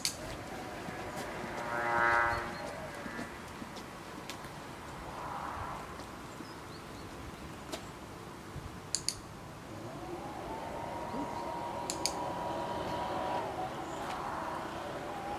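Dog-training clicker clicking: one sharp click at the start, then two quick double clicks about nine and twelve seconds in, each marking a correct heel for a treat. A short pitched whine about two seconds in is the loudest sound.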